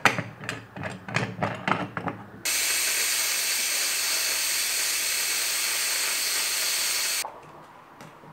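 Aluminium stovetop pressure cooker letting off steam: a loud steady hiss that starts abruptly about two and a half seconds in and cuts off after about five seconds. Before it, a quick run of knocks and scrapes in a cooking pot, about four a second.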